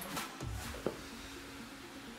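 Soft background music under a few light clicks and knocks in the first second, as rubber resistance tubes and their handles are picked up and handled.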